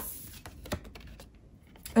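Tarot cards being picked up off a table and handled: a few light, sharp clicks and taps of the card stock against the table and against each other.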